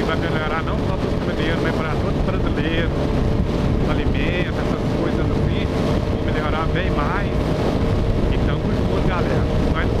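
Wind rushing over the microphone while a sport motorcycle cruises at steady highway speed, its engine holding one even drone.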